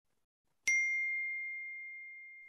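A single bright notification ding from a smartphone about two-thirds of a second in. Its clear high tone rings on and slowly fades.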